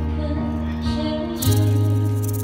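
Live band music from a slow song: held guitar and bass chords, with a cymbal crash and a change of chord about a second and a half in.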